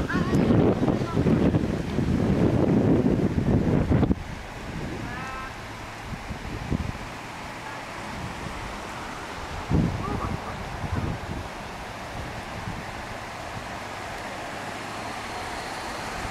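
Loud low rumbling wind noise on the microphone for about four seconds, cutting off suddenly to a quieter steady background hiss.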